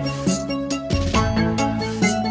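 Background music: an instrumental tune with a steady beat.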